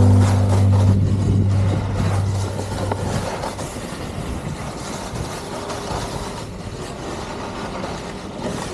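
The last chord of the background music rings out and fades over the first few seconds. Under it and after it, a bindingless snow-surf board slides over groomed snow: a steady rough hiss broken by irregular scrapes.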